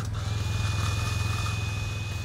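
Warn Pro Vantage 4500 electric winch starting shortly in and running steadily, spooling in its steel cable with a thin, high, even whine, over the low hum of the side-by-side's engine running.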